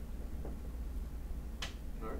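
Quiet room tone with a steady low hum, broken by a single short sharp click about a second and a half in.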